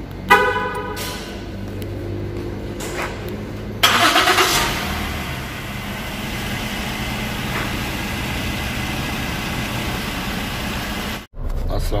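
A car horn sounds once, briefly. About four seconds in, a Ford Edge's engine cranks and catches with a short rising rev, then settles into a steady idle.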